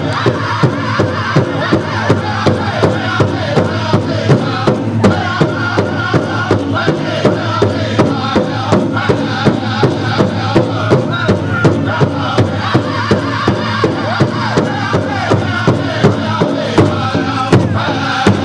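Powwow drum group singing to a steady, even drumbeat, a little under two beats a second, for contest dancing.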